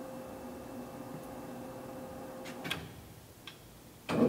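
A Clausing Metosa C1440S engine lathe's spindle and headstock gearing running at a moderate speed with a steady, fairly quiet hum. About two-thirds of the way through there is a click, and the running sound drops away.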